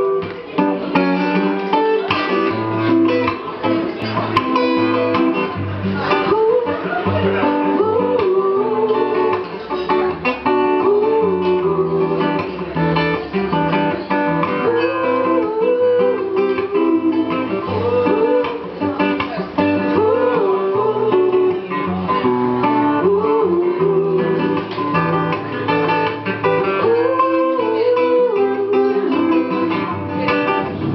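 Reggae-style music led by acoustic guitar, strummed over a steady, repeating bass line, with a wavering melody line above it.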